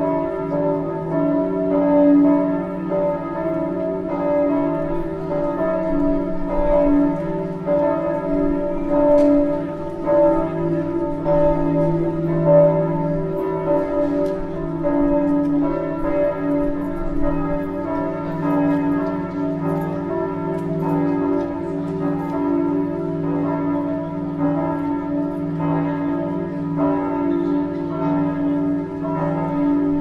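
Church bells ringing continuously, many strikes following one another so that the bells' long ringing tones overlap without a break.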